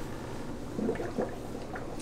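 Aquarium air pump running, with air bubbling up through the water from a cannon ornament that fills with air and lets it out; a few soft gurgles about a second in.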